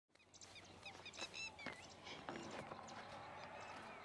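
Faint chirping of small birds: many short, quick notes over a soft steady background hiss.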